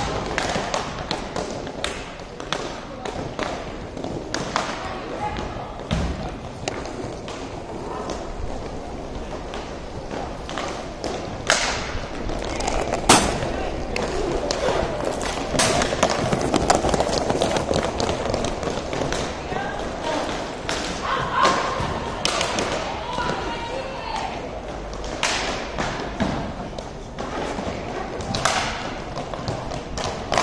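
Inline hockey play: the plastic puck and sticks give frequent sharp clacks and thuds, with a few loud knocks a little before halfway. Voices of players and spectators call out over it.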